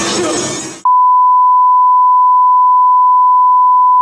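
Music cuts out under a second in and a loud, steady single-pitch beep takes its place: the test-tone beep of an off-air 'no signal' screen.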